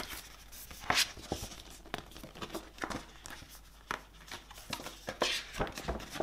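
A folded paper poster being handled and unfolded: dry paper rustling and crinkling, with sharp flaps and snaps of the sheet, the loudest about a second in.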